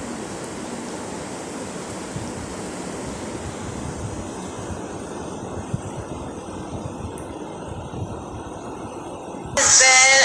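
Steady low background noise with a few faint knocks, then a woman starts talking loudly near the end.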